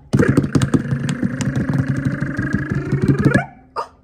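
Fast hand drum roll: both palms patting rapidly on a surface for about three seconds, then stopping abruptly. A woman's voice holds one long note over the roll, rising at the end.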